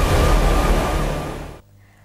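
News segment title sting made of produced sound effects: a dense low noise with a steady siren-like tone on top, fading out about three-quarters of the way through.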